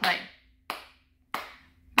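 Hands clapping a steady beat, a clap about every two-thirds of a second, three claps in a row, as the word "play" of a spoken count-in fades. The claps keep the pulse of a rhythm exercise going.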